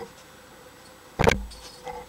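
Handling of a small clear plastic toy egg and plastic toy dinosaurs: a light click at the start, one sharp knock a little over a second in, and a lighter click near the end.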